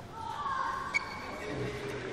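Indistinct voices of people talking in a large room, with a single sharp ping about a second in that rings briefly.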